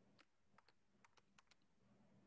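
Faint typing on a computer keyboard: a handful of light, irregular keystrokes over a near-silent line.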